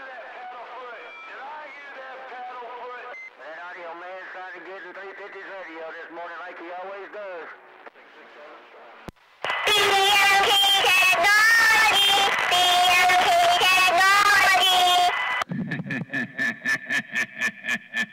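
CB radio receiver carrying other stations' voices. First a weaker, thin-sounding transmission, then, after a click about nine seconds in, a much louder, hissy and distorted one. Near the end the received voice turns into a rapid, evenly spaced pulsing.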